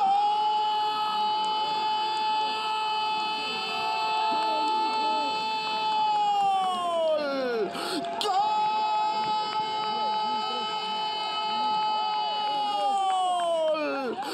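Spanish-language football commentator's drawn-out goal cry, "Gooool", held on one high note for about seven seconds before its pitch falls away, then after a quick breath a second long hold of about six seconds that also falls off at the end.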